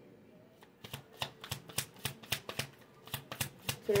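A deck of oracle cards being shuffled by hand: a quick, irregular run of light card slaps and clicks that starts a little under a second in.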